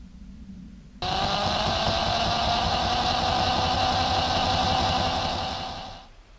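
Power drill boring out the end of a steel tube held in a vise, starting abruptly about a second in and running steadily with a slightly rising tone, then winding down near the end.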